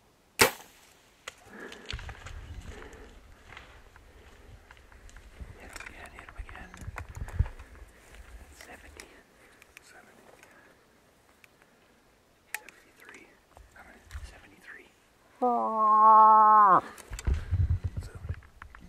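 A bow shot at a bull moose: a sharp snap of the string release about half a second in, then low rumbling and crackling of brush. A second sharp shot snap comes about twelve and a half seconds in. About fifteen seconds in there is a loud drawn-out vocal call, held level and then dropping in pitch.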